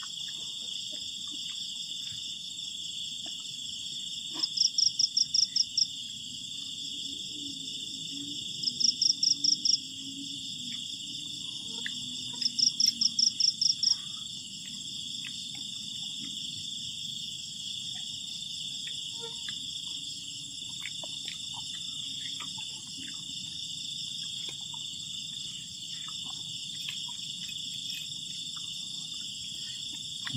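Chorus of night insects, crickets among them, with a steady high chirring throughout. Three times in the first half, about four seconds apart, a louder trill of rapid pulses lasts about a second and a half.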